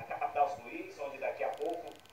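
Speech only: a male reporter talking.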